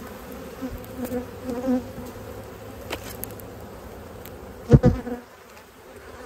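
Honeybees buzzing over an open hive, with single bees flying close past now and then. About five seconds in, two loud knocks as a wooden hive box is handled.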